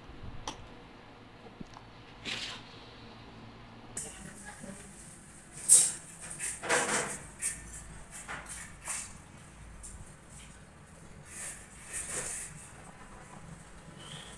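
Scattered knocks and light clatter of household activity, the sharpest knock about six seconds in, with muffled voices in the room.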